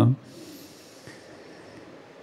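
The tail of a man's spoken word, then a quiet pause with a soft breath into a handheld microphone over a faint, steady hiss of room tone.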